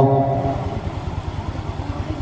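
A pause in a man's chanting: the voice breaks off at the start, leaving a steady low rumble and hiss in the background.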